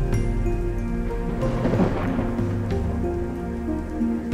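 Slow ambient new-age music of held synth tones, with a thunder-and-rain nature effect laid over it that swells and fades about halfway through.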